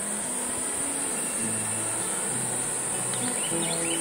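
Insects droning steadily in a high-pitched continuous chorus, with a faint low hum underneath.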